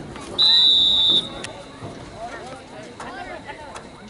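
A referee's whistle gives one steady, high-pitched blast of under a second, shortly after the start, over the voices of the crowd and sidelines.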